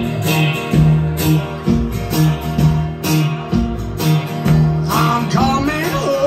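Live rockabilly band playing an instrumental passage: upright bass, strummed acoustic guitar, electric guitar and drums on a steady beat, with a run of rising notes about five seconds in.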